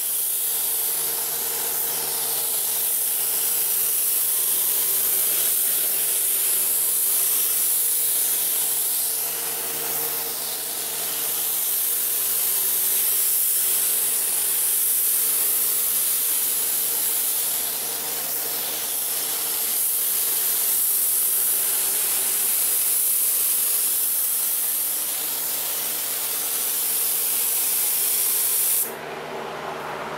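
Gravity-feed spray gun hissing steadily as it sprays a jet black base coat onto a fiberglass door panel, the hiss swelling and easing slightly from pass to pass. The hiss cuts off suddenly near the end, leaving a steady low hum.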